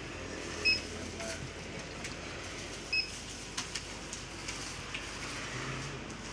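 Barcode scanner at a checkout beeping twice, each a short high beep, about two seconds apart, as items are scanned, with light clicks of goods being handled over a steady low hum.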